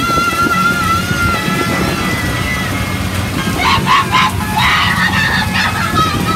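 Amusement arcade din: a long held electronic tone that wavers slightly and fades out after about two and a half seconds, then a jumble of short bright game sounds, all over a steady low machine hum.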